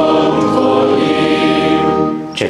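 Group of voices singing together and holding one long chord, which ends near the end; it is the close of the sung acclamation before the Gospel reading.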